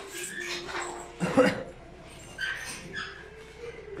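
Short high-pitched animal whines, with a louder call that falls in pitch about a second and a half in.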